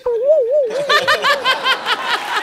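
A woman laughing loudly: a wavering, drawn-out note that breaks into a quick run of ha-ha-ha pulses, about seven a second.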